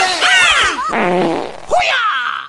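Long, buzzy fart sounds that wobble and fall in pitch, in two or three goes.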